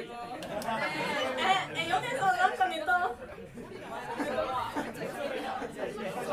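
Indistinct chatter of several people talking at once in a large room.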